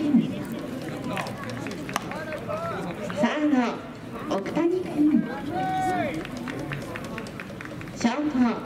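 Indistinct voices of people at a ballpark calling and shouting, several short calls and one longer held call about six seconds in, with a few sharp clicks.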